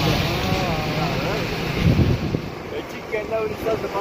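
Wind rushing over a microphone held outside a moving car's window, over steady road and engine rumble. The rush is loudest in the first half and drops away after a thump about two seconds in. Voices are faint underneath.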